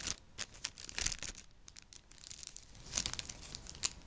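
Plastic blind-bag packaging crinkling and tearing as it is opened by hand, in several short spells of crackle: near the start, about a second in and again near the end.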